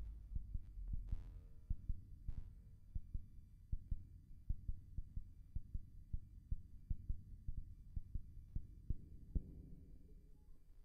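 A Moog Subharmonicon and Mother-32 analog synthesizer patch, with delay and reverb, playing an uneven run of low, throbbing pulses several times a second. A couple of short, higher pitched tones sound in the first few seconds, and a low droning tone swells near the end.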